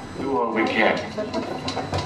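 Indistinct speech: a voice from sampled film dialogue, no clear words.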